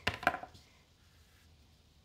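A quick cluster of light knocks and taps lasting about half a second, from hand and paintbrush handling against the painting surface on the table.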